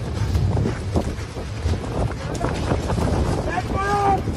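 Open safari jeep driving fast on a dirt track, heard through a phone's microphone: a steady low engine and road rumble with wind buffeting the mic. Excited human voices cry out near the end.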